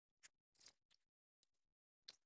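Near silence, with a few faint, brief noises.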